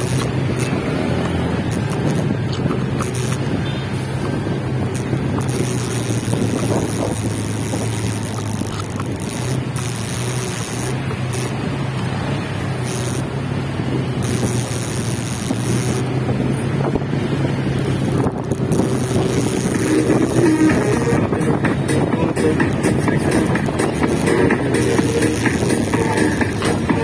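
A motorcycle running at low speed in city traffic: a steady engine drone with rushing road and wind noise. Music comes in over it about three-quarters of the way through and grows louder.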